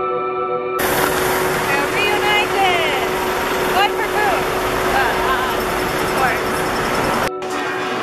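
Background music, cut about a second in to a loud street recording full of wind and traffic noise with women's voices exclaiming and calling out. A steady music tone carries on underneath throughout. Near the end there is another sudden cut to a quieter scene.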